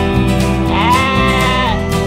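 A lamb's single wavering bleat, about a second long, over loud music.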